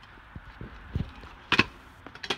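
Knocks from a stunt scooter on hard ground: a few low thuds, then one sharp clack about a second and a half in.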